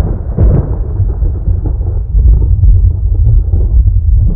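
A loud, deep rumble like rolling thunder, a sound effect under the closing logo card, with no clear tune or voice in it.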